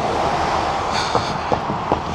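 Steady noise of a road vehicle going by, mostly tyre and engine rush, with a few light ticks in the second half.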